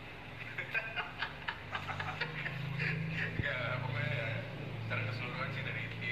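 People talking in a room, the voices indistinct. A few light clicks sound in the first second or so, and a low steady hum comes in about two seconds in.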